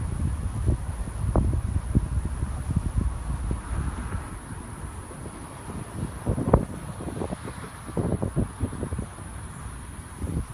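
Wind buffeting the microphone of a handheld phone: an uneven low rumble with occasional short pops, the sharpest a little past the middle.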